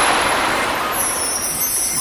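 A loud, rushing whoosh sound effect for an animated logo, fading slowly. A high, glittering shimmer comes in about a second in.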